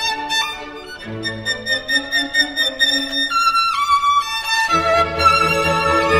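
Solo violin playing a classical passage, quick runs of notes and then a few held high notes with vibrato. Sustained low accompaniment comes in about three-quarters of the way through.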